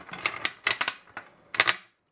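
A plastic terminal-block connector being handled and set down on a glass tabletop: a run of light clicks and taps, with a louder clack about one and a half seconds in.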